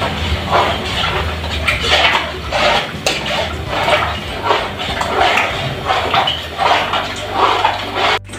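Hands squeezing and stirring ground meal in water in a metal pot: a run of wet swishes and squelches, about two a second, over a steady low hum.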